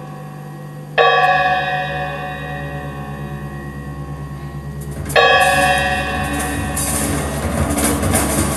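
A struck metal percussion instrument rings out twice, about four seconds apart, each stroke sustaining with several clear tones and slowly fading over a low steady hum. Busier, clattering percussion comes in near the end.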